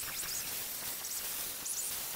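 Angle grinder with a flap disc grinding a weld seam on a steel frame: a steady, hissy grinding noise.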